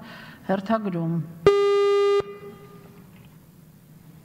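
A single electronic beep from the chamber's electronic voting and registration system: a loud, steady buzzing tone that starts and stops abruptly, lasting under a second, as speaker registration opens. A woman speaks briefly just before it.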